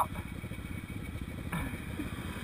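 Off-road vehicle engine idling, a steady fast low pulsing, with a faint voice near the end.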